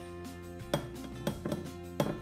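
Background music, with a few short scraping strokes of fresh cheese being rubbed down a metal hand grater.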